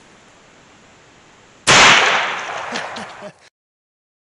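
A single shot from a CVA Hunter break-action rifle in .450 Bushmaster, fired about a second and a half in, its loud report echoing and dying away over about a second and a half. The sound then cuts off suddenly.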